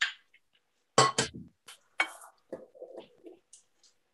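An egg knocked against the rim of a glass mixing bowl to crack it: a few sharp clinks, the loudest about one and two seconds in, with softer shell and handling sounds between.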